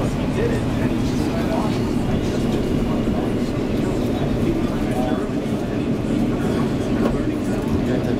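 New York City subway train running, heard from inside the car as it moves alongside a station platform: a steady rumble and rattle of the wheels and car, with passengers' voices over it.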